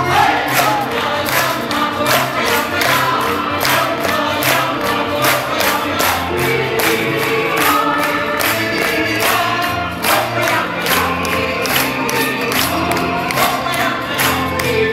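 A group singing together over music, with the audience clapping along in a steady rhythm.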